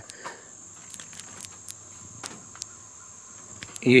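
Tobacco hornworm caterpillar clicking its mandibles, short sharp clicks at irregular intervals a few times a second, a defensive warning noise.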